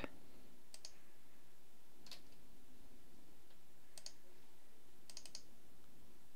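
Faint computer mouse clicks: single clicks about one, two and four seconds in, then a quick run of several clicks a little after five seconds, over a steady low room hum.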